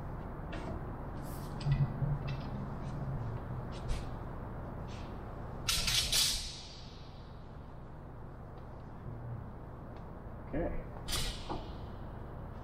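Scattered light clicks and knocks from handling bar clamps on a plywood box, with one louder clatter about six seconds in, over a steady low hum.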